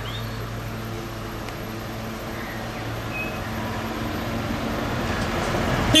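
Road traffic dominated by an approaching double-decker bus: a steady low engine drone that grows gradually louder as the bus nears, with a short loud burst right at the end.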